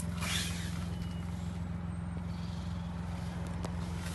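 Car engine idling, a steady low hum heard from inside the cabin, with a brief rustle just after the start.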